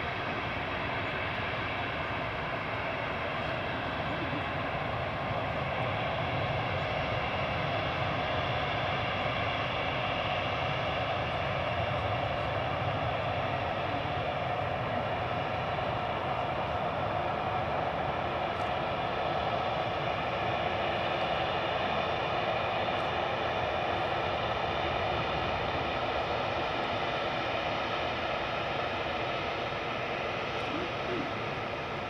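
Boeing 737-800's CFM56 turbofan engines running at low taxi thrust as the airliner taxis past: a steady rush with a layered whine of held tones, growing a little louder through the middle.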